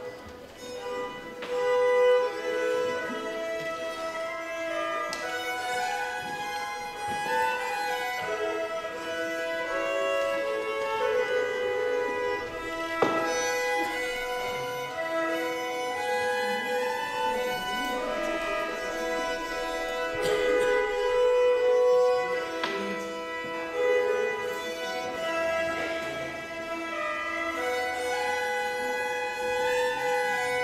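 Two Hardanger fiddles playing a waltz as a duet, a bowed melody over a steady held drone.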